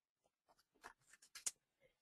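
Near silence in a pause between speech, with a few faint, short clicks around the middle.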